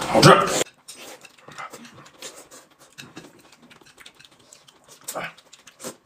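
A man eating noodles with chopsticks: faint, scattered chewing and slurping, with two louder short slurps near the end.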